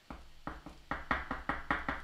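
Quick run of light knocks, about five a second, as a sandpaper pencil-sharpening pad is tapped against a surface to shake off the graphite dust built up on it.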